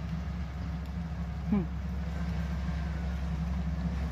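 Excavator's diesel engine running with a steady low drone.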